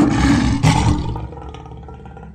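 A lion's roar sound effect: one loud, rough roar that is strongest in the first second, with a second surge partway through, then dies away.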